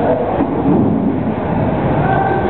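Busy market-hall din: a loud, steady low rumble with faint voices mixed in.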